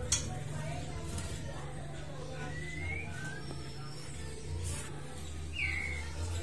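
White-rumped shama giving a few short whistled call notes: a rising one midway and a falling one near the end, over a low steady hum.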